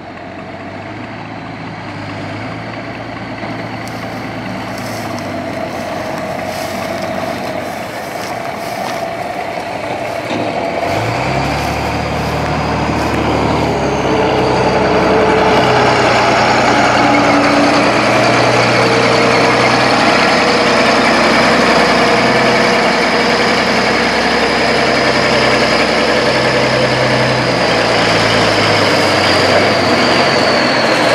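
Clark Michigan 75B wheel loader's diesel engine running, growing steadily louder as the loader works; about eleven seconds in it revs up and stays under load as it lifts the block of 120 straw bales on its pallet forks. A high whine runs over the engine in the second half.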